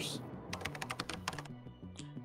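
Computer keyboard typing: a rapid run of key clicks over quiet background music.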